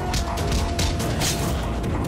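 Action-film fight background score: a fast, clattering percussive rhythm over a single held tone.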